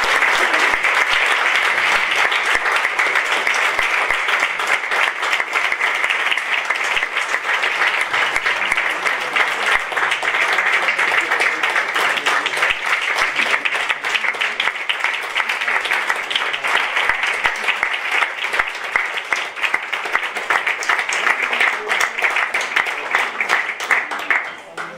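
A roomful of people applauding: sustained, dense clapping that holds steady and stops sharply at the very end.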